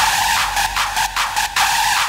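Hardstyle track with the kick and bass dropped out: a harsh, screechy high-pitched synth chopped in a fast, even rhythm.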